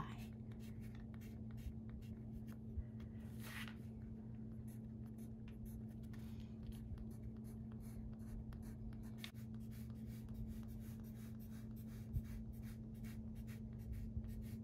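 Colored pencil drawing quick short strokes on sketchbook paper: a rapid run of faint scratches, with a low steady hum underneath.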